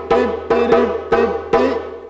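Djembe played with bare hands in the closing break of a rhythm: about five sharp strikes with ringing tones, the last about one and a half seconds in, then dying away.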